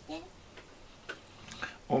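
A few faint, light clicks about half a second apart in a quiet room, with a brief voice sound at the start and a voice speaking near the end.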